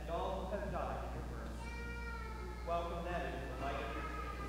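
A faint, fairly high-pitched voice in three short stretches whose pitch rises and falls.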